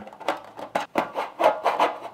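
Knife tip scraping and punching through thin aluminium foil pans, a quick, uneven run of crinkly scratches and clicks.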